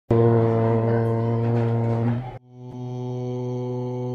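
A male voice chanting "Om" on one steady low pitch: an open "O" held for about two seconds, a short break, then a long hummed "mmm".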